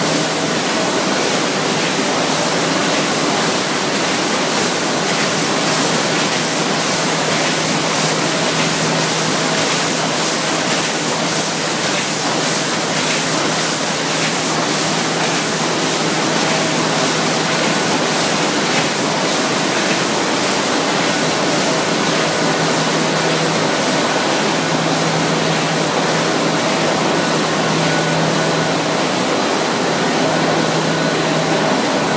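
A Planeta sheetfed offset press line, modified to print metal sheets, running: steady, loud machine noise with a faint constant hum under it.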